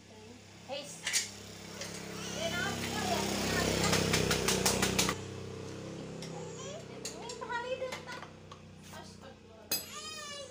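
Young children talking and babbling in the background. A louder steady hum builds up, carries a quick run of clicks, and cuts off abruptly about five seconds in.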